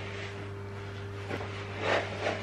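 Kitchen room tone: a steady low electrical hum with a faint higher tone over a light hiss, and a brief soft knock near the end.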